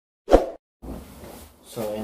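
A single short, sharp pop about a third of a second in, an editing sound effect at the end of a Subscribe-button animation, cutting into room tone. A man's voice starts near the end.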